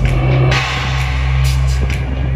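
Loud amplified live band music with a deep, steady bass line and drum kit.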